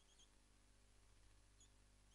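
Near silence: low room hum, with a few faint short squeaks of a marker writing on a whiteboard.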